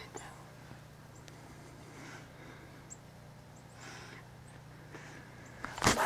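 Quiet stretch of faint rustling with a few short, faint high chirps, ending in a loud bump of handling noise on the camera just before the recording stops.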